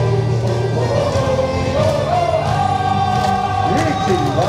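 A baseball player's cheer song playing loudly over the ballpark sound system, with a chorus of voices singing. About halfway through, a sung note rises and is held almost to the end.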